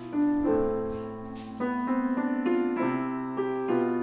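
Solo piano playing slow, sustained chords, with a quicker run of repeated notes in the middle.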